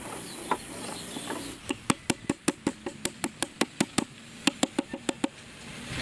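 Quick light hammer taps driving a nail into the wooden drawer, about five a second, in two runs with a short pause between them.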